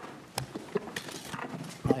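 Footsteps of hard-soled shoes on a wooden floor: a few uneven knocking steps, then a man starts speaking near the end.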